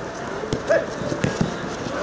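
Knocks of a football being kicked and players' feet on artificial turf: one about half a second in and two close together near the end, with a brief shout between them.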